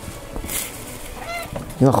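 A house cat gives one short, high meow about a second in.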